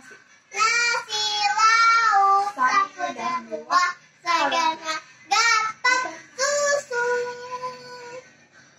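A young girl singing solo, without accompaniment, in a series of short sung phrases, the last one a long held note that stops just before the end.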